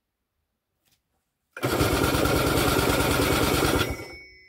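PD-10 single-cylinder two-stroke starting (pony) engine of a Belarus MTZ-52 tractor, on choke, catches about one and a half seconds in, runs fast and steady for about two seconds, then cuts out suddenly.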